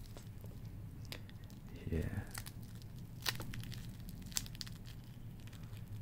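Faint crinkling of clear protective plastic film on a wristwatch as it is handled, with a few sharp small clicks.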